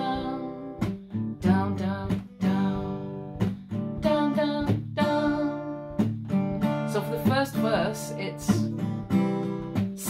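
Tanglewood TW73 parlour acoustic guitar strummed in steady downstrokes, about two a second, playing a C, G and D minor chord progression.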